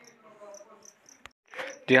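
Faint insect chirping, high-pitched and evenly spaced at about four chirps a second.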